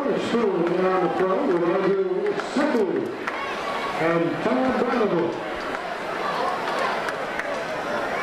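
Men's voices shouting in drawn-out calls on a football field, in one long stretch over the first three seconds and a shorter one about four seconds in, over a steady crowd murmur.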